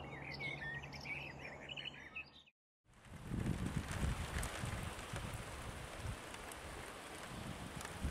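Small birds chirping over a low steady hum, cutting off suddenly about two and a half seconds in. After a brief silence, steady rain falls for the rest.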